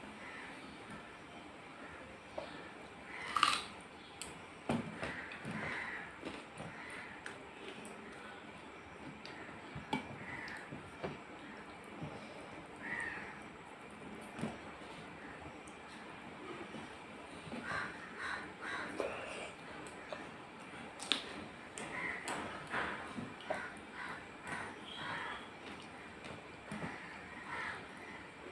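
Eating by hand from a steel plate: fingers mixing wet rice with dal and curry, soft chewing, and small clicks of fingers and food on the metal, with two sharper clinks a few seconds in and about 21 seconds in. A bird calls on and off in the background.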